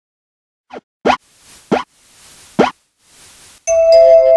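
Intro sound effects: four quick plops that each fall in pitch, the last three loud, with soft whooshes between them. Near the end a sustained chord of several steady tones strikes.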